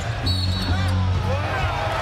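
Live basketball arena game sound: crowd noise with arena music playing under it, and the sounds of play on the court as a player drives to the basket and is fouled.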